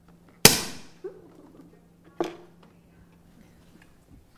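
A champagne cork popping out of the bottle about half a second in, loud and sharp, with a short fizzing tail; a softer knock follows about two seconds in.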